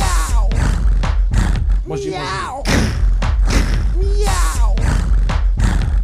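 Live loop music: a programmed beat with a heavy bass under looped wordless vocal calls, the same arching vocal phrase coming round about every two seconds.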